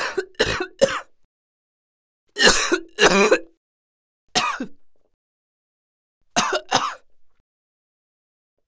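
A person coughing in short bursts with pauses between: three quick coughs at the start, two heavier ones a couple of seconds in, a single cough after that, and a quick pair near the end.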